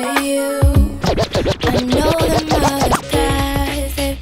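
A DJ scratching on a Rane One motorized-platter controller over a hip-hop track: fast back-and-forth pitch sweeps for about two seconds, starting about a second in, before the music plays on normally.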